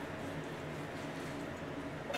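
Quiet, steady background hiss of room tone with no distinct sounds.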